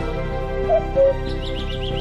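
Calm background music with forest birdsong laid over it: a bird's two-note falling call a little under a second in, then a quick run of high chirps near the end.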